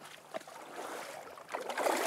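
A hooked Atlantic salmon thrashing and splashing at the surface as a hand grabs for its tail, the splashing starting suddenly about a second and a half in. A man's shout of surprise begins over it at the very end.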